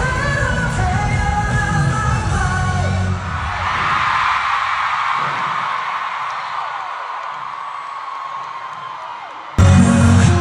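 Live K-pop performance in an arena: pop music with singing and heavy bass through the PA. About three seconds in, the bass drops away and a crowd screams and cheers, gradually fading. Loud music cuts back in suddenly just before the end.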